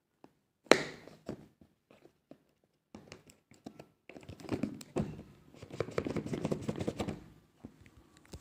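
Handling of a sealed cardboard phone box: a sharp knock about a second in, scattered light taps, then a few seconds of dense cardboard scraping and rustling with small clicks as the security seal is broken and the box is worked open.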